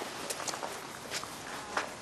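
A few soft, unevenly spaced footsteps over a faint steady outdoor hiss.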